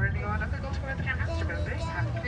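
Steady low rumble of a tour boat's motor, with indistinct speech over it.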